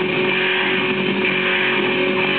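Lo-fi rock music with distorted electric guitar, played from a vinyl single on a turntable: a dense, unbroken wall of sound with one held note through it.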